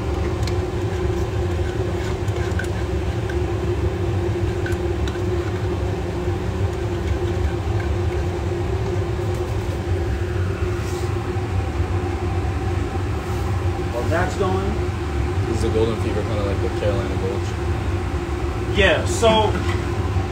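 Steady low mechanical hum of a ventilation fan, with faint voices briefly in the background about two-thirds of the way in and again near the end.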